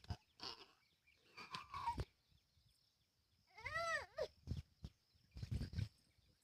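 A small child's short, high-pitched vocal sound about four seconds in, rising and falling once, with a softer voiced sound earlier. A few soft thumps near the end.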